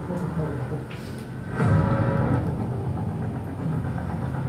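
A low steady rumble that grows louder about one and a half seconds in, with a man's voice briefly calling out a name at the start.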